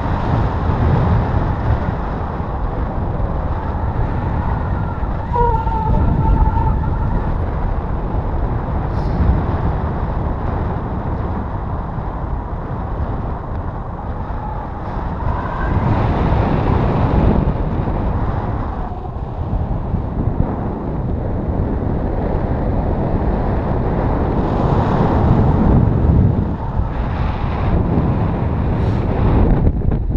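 Wind rushing over the camera microphone of a paraglider in flight, a steady roar that swells and eases in gusts. A faint short wavering tone is heard about six seconds in.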